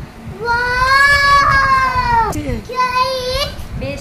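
A young girl's long, high-pitched drawn-out exclamation of delight, falling in pitch at its end, followed by a second, shorter one.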